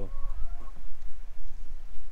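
A chicken clucking faintly a few times in the first half-second or so, over a steady low rumble of wind on the microphone.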